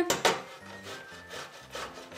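Potato being grated on a metal box grater: a series of scraping strokes, the first one loudest, the rest softer.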